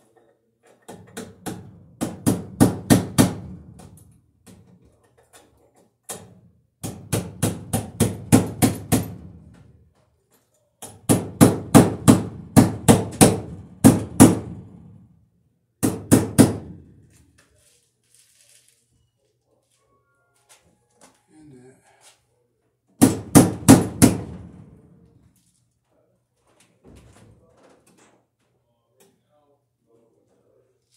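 Hammer striking into an overhead wooden joist in five quick bursts of rapid blows, about four or five a second, with pauses between them as fasteners are driven in.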